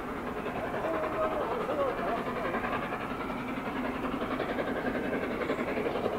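Steady hiss and rumble of trains: the LNER A4 steam locomotive Sir Nigel Gresley creeping slowly forward with steam escaping, beside a standing GWR Class 800.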